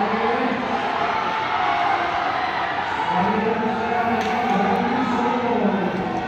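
A man's voice over a stadium public-address system, echoing across the stands, with a steady background of crowd noise.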